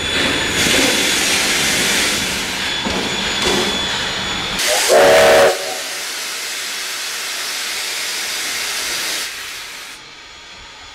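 Steam locomotive standing at the platform, hissing steam loudly and steadily until near the end. About five seconds in, a short whistle blast is the loudest sound.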